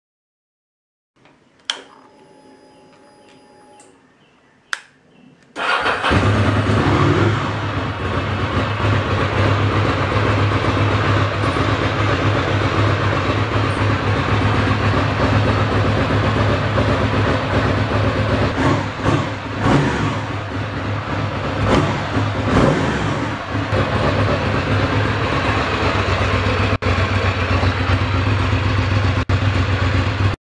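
2005 Ducati Monster 620's air-cooled L-twin: a quiet steady hum at key-on, then the engine fires about five seconds in and settles into a steady cold-start idle. The idle is smooth, with none of the fuel-pump noise a plugged fuel filter had caused; the filter has just been replaced.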